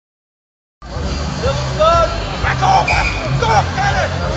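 Outdoor crowd voices and chatter with a man's voice over it, and a steady low rumble underneath; the sound cuts in just under a second in.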